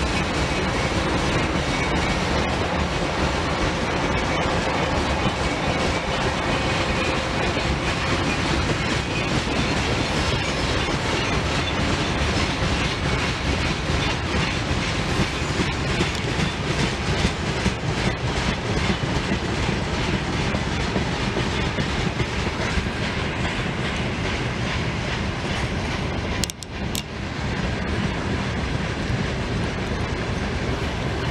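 A long freight train of loaded open wagons rolling past, its wheels clicking over the rail joints in a steady clatter, with a brief dropout near the end.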